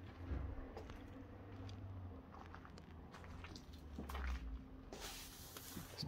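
Footsteps crunching and clicking over broken glass and debris on a hard floor, as scattered faint ticks, with a low rumble from the handheld camera. A short rush of noise comes about five seconds in.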